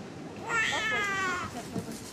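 Newborn baby crying: one wail of about a second, starting about half a second in, with a slight fall in pitch.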